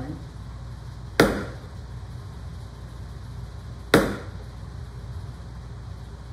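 Small hammer striking a narrow, chisel-like steel tool held upright in wood: two sharp taps about two and a half seconds apart, each driving the edge down to sever the wood grain for a stringing-inlay channel.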